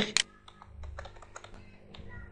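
Keystrokes on a computer keyboard: an irregular run of light clicks as a date is typed into a form field.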